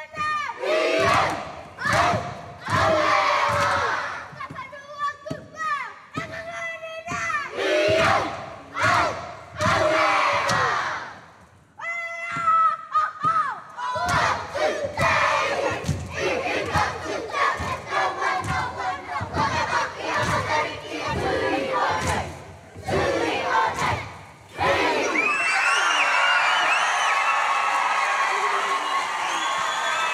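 Children's kapa haka group performing a haka: many young voices shouting chanted lines in unison, in phrases broken by brief pauses, with sharp slaps and stamps through them. Near the end the voices become a continuous, loud, high-pitched mass.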